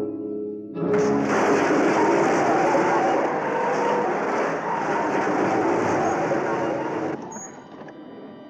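Dramatic film score: held notes, then a loud, dense orchestral swell about a second in that holds for some six seconds and falls away near the end.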